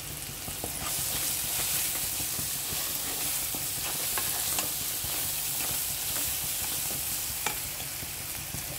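Chopped onions, tomatoes and capsicum sizzling in a non-stick frying pan while a spatula stirs them, with scattered light scrapes and taps of the spatula on the pan. The sizzle grows a little louder about a second in.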